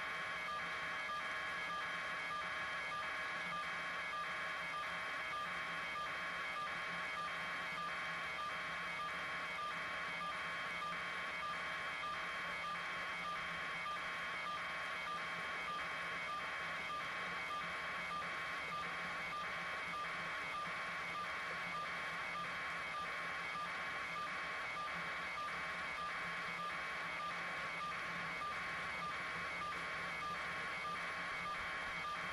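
A steady electronic pulsing, about two evenly spaced pulses a second, repeating unchanged, with faint steady tones beneath it.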